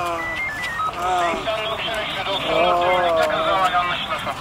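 Several people's voices talking over one another, no words clear, with a short run of high electronic beeps in the first second.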